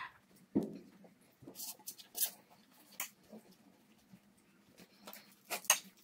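Quiet eating noises as noodles are eaten with a spoon and fork: a handful of short slurps and mouth sounds, with light clicks of cutlery.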